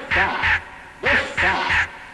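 Hardcore techno in a DJ mix, at a stripped-back moment: a short synth or sampled stab repeats in quick groups of three, about three hits a second, with no steady kick drum under it.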